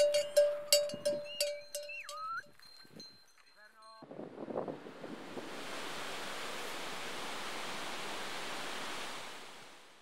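Outro jingle: a bell-like note repeated about three times a second, with a brief gliding whistle, stops after a couple of seconds. A steady hiss like wind or surf then swells up, holds, and fades out near the end.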